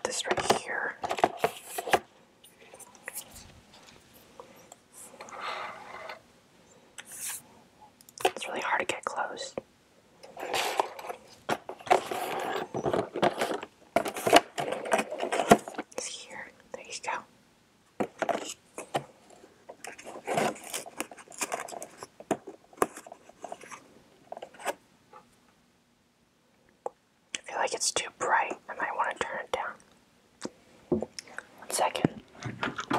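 Soft whispering mixed with the rustling, scraping and clicking of a thin plastic tray of mini mochi ice cream being opened and handled close to the microphone, in irregular bursts with quiet gaps between.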